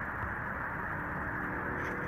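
Steady outdoor background noise: an even low rush with no distinct events.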